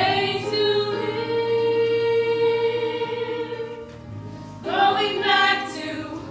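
A small chorus of men and women singing together in a theatre. They hold one long note, dip briefly about four seconds in, then start a new phrase.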